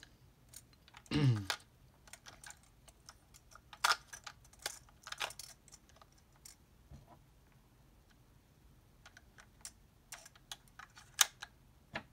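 Scattered sharp clicks and taps of AAA batteries being handled and pushed into the plastic battery compartment of a Minolta Freedom Dual film camera. There is a cluster a few seconds in and another run near the end.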